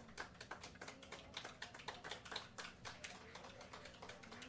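Sparse, faint applause from a small audience, with individual claps heard separately at several a second.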